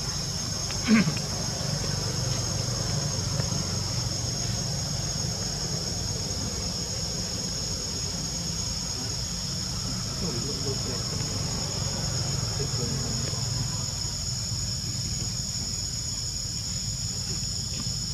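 Steady high-pitched insect chorus from the forest undergrowth over a low steady rumble, with one brief falling sound about a second in.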